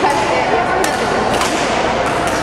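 Badminton racket hits on a shuttlecock in a gymnasium hall: a sharp crack a little under a second in and another about half a second later, over voices talking in the background.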